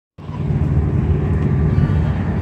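Diesel engine idling, a steady low rumble that starts just after a moment of silence.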